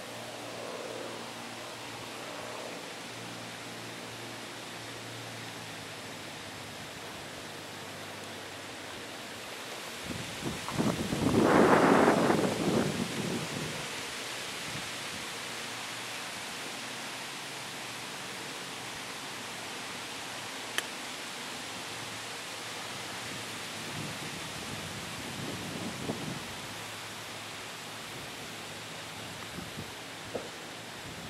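Steady outdoor noise with rustling on a handheld camera's microphone. About a third of the way in, a louder rushing noise swells for a few seconds and fades, and a single click comes later.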